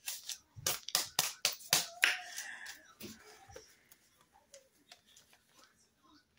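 Paper dollar bills being unfolded and fanned out by hand: a quick run of sharp crinkling snaps over the first few seconds, then only faint rustles.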